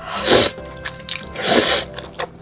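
A person slurping a mouthful of spicy instant noodles, two loud slurps about a second apart, over background music.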